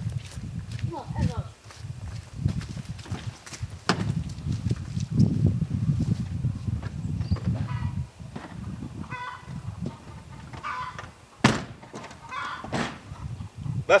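Faint, indistinct voices over a low rumble, with one sharp knock about eleven and a half seconds in.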